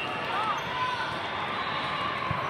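Busy indoor volleyball hall: a steady din of many distant voices with echoing ball bounces from the courts, and short high chirps scattered through it.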